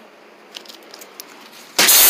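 A few faint clicks, then near the end a sudden loud rustling burst from a hand working close to the camera.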